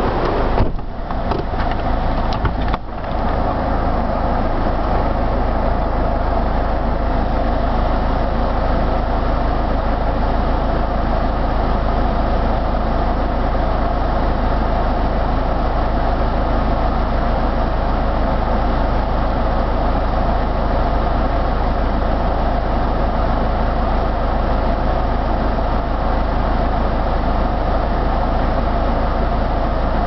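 Car engine idling steadily, heard from inside the cabin as an even low hum. A few brief knocks break it about one to three seconds in.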